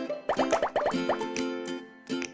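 Bright plucked ukulele background music, with a quick run of about six rising popping blips between about a third of a second and one second in.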